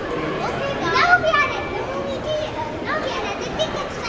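Children's voices: several kids talking excitedly, with a louder, rising high-pitched exclamation about a second in.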